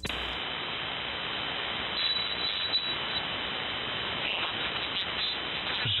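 Steady hiss of band noise and static from a shortwave receiver tuned to the 75-metre band, heard through its narrow voice-audio passband while no station is transmitting.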